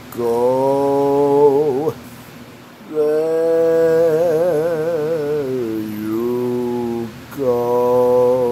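A man singing solo and unaccompanied in slow, long-held notes: three phrases with short breaths between, the middle one the longest, with a wide wavering vibrato.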